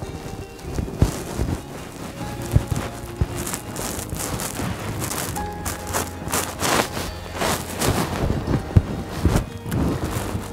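Background music, with scattered light knocks at uneven intervals from footsteps in high-heeled shoes.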